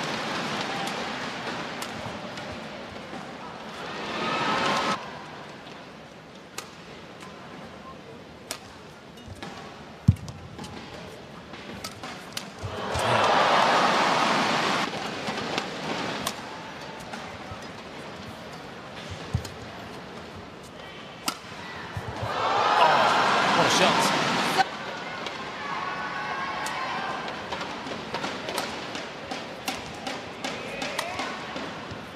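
Badminton play: sharp racket strikes on the shuttlecock come through the rallies. An arena crowd cheers and applauds in three loud swells, one a few seconds in, one near the middle and one at about three-quarters, as points are won.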